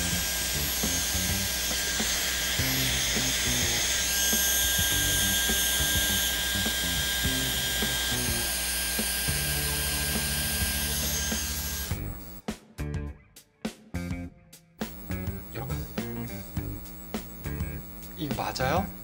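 Dyson Airwrap running on its curling barrel: a steady rush of hot air with a high motor whine. It cuts off suddenly about twelve seconds in.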